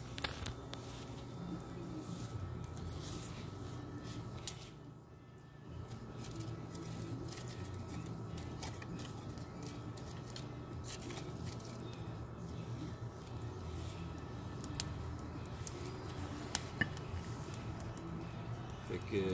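Wood fire burning in a homemade cement rocket stove: a steady low rumble with scattered crackles and pops.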